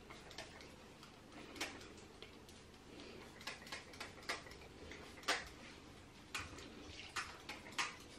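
Small pump-spray bottle of hair scalp lotion squirting onto the scalp in short, faint hisses, about eight of them at irregular intervals.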